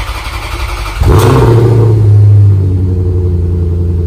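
Maserati GranSport's 4.2-litre Ferrari-built V8 being started through its exhaust: the starter cranks for about a second, then the engine catches with a flare and settles into a steady idle.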